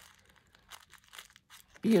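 Faint rustling and light crackles of thin sewing-pattern tissue paper being handled, then a woman's voice near the end.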